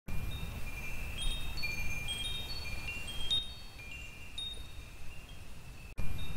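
Wind chimes tinkling: high single ringing notes struck at random, thick for about three seconds and then thinning out, over a low rumble.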